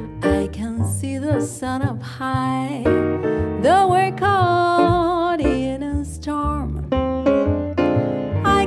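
Live jazz trio: a woman's voice singing over piano and plucked double bass, with one long, wavering held note around the middle.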